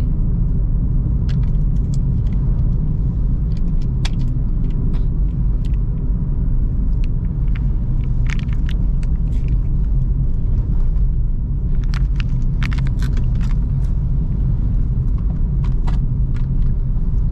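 Steady low rumble of road and engine noise inside a Suzuki Ertiga's cabin as it drives along, with scattered light clicks and rattles over it.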